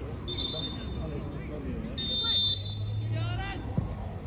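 Two short, high whistle blasts, one near the start and one about halfway, over spectators' voices.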